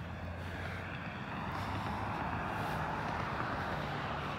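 Vehicle traffic noise: a steady low engine hum under a rush of road noise that swells gently over the first couple of seconds and then holds.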